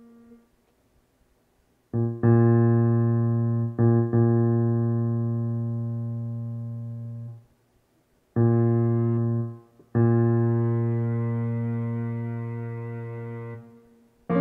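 Yamaha Montage M6 synthesizer playing a keyboard preset: after a silent first two seconds, long low held notes are struck, re-struck, and left to fade slowly, each cutting off when the keys are let go, four times in all.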